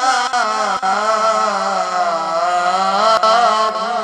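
A man's voice reciting the Quran in the melodic tajwid style (qirat). He holds one long ornamented note that wavers in pitch, dips in the middle and lifts again near the end.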